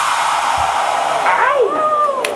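Steady, loud hiss of electronic noise from the performance after the music drops out, with a couple of voice-like rising and falling cries near the end.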